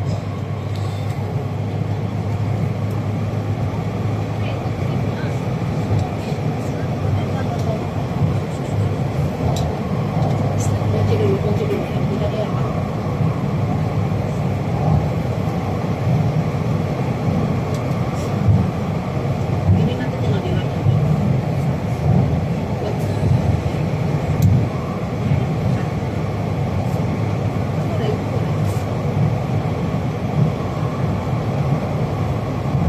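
Metro train running at speed through a tunnel, heard from inside the car: a steady rumble of wheels on rail, with a low hum that fades out about ten seconds in and scattered faint clicks.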